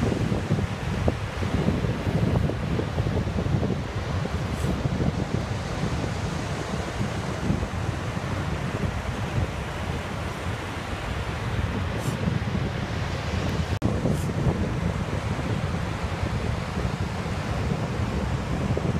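Wind buffeting the microphone over the steady wash of surf on a sandy beach, with a gusty low rumble; the sound drops out for an instant about three-quarters through.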